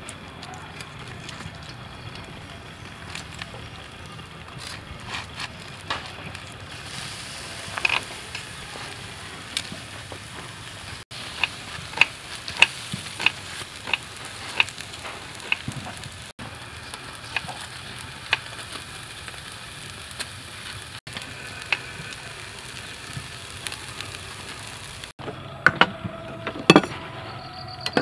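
Salt-crusted whole fish sizzling on a grill, a steady hiss with frequent sharp crackles and pops. Near the end, a few hard knocks of a cleaver on a wooden chopping board.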